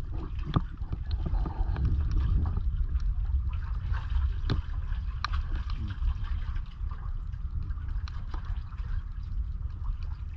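Water lapping and gurgling against a seawall and oyster-covered piles, with scattered sharp clicks over a steady low rumble.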